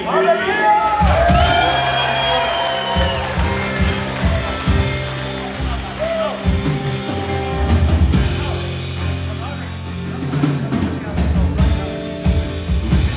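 Live worship band playing, with a drum kit keeping the beat under sustained low band tones. Excited voices shout loudly over it in the first few seconds.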